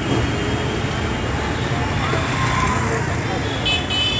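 Steady street traffic noise of passing vehicles, with a high-pitched vehicle horn sounding near the end.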